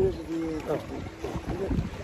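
Quiet talk between men, with wind buffeting the microphone as a low rumble underneath.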